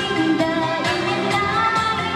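Chinese New Year pop song performed live: a woman singing into a microphone over a backing track with a steady beat, played through a PA.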